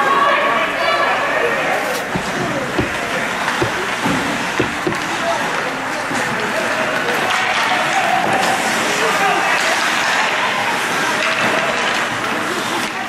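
Indistinct spectator voices and calls at an ice hockey rink, with a handful of sharp knocks from sticks and puck between about two and five seconds in.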